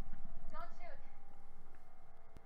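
Audio of the TV episode playing in the background: a short cry that falls in pitch about half a second in, over a quick, low, rapid patter.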